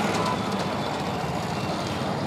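Steady low rumble of running engines and street traffic, even throughout with no sudden events.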